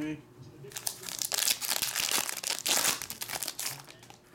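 Foil trading card pack wrapper being torn open and crinkled by hand: a dense run of crackling that starts about a second in and stops just before the end.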